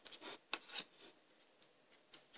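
Faint rustling of a tarot deck being shuffled by hand: a few short, soft strokes of cards sliding against each other in the first second.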